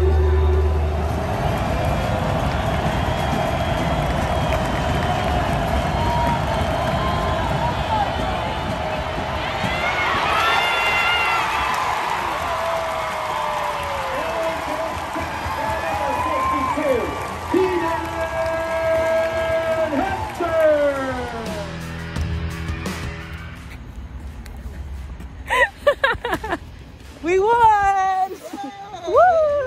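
Stadium crowd noise with music playing over it and sustained notes. After a cut near the end, excited voices and laughter.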